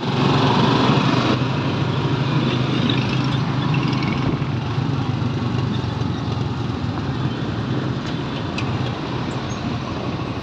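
Jeepney's diesel engine running steadily with road noise, heard from inside the open passenger cabin as it drives along a street.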